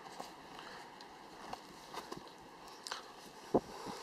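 Faint handling noise of a hoof boot's tension strap being pulled tight on both sides: light rustles and a few small clicks, with a sharper click a little past three and a half seconds in.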